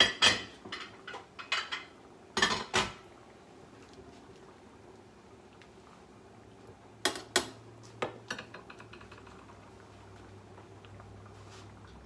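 A metal ladle clanking against a stainless steel stockpot as potatoes are lowered into boiling water. Sharp clanks come in the first three seconds and again around seven to nine seconds in, with a faint steady background between.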